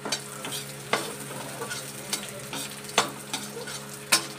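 Metal spatula stirring and scraping sliced onions frying in oil in a steel kadhai, with the oil sizzling steadily. The spatula knocks against the pan about once a second.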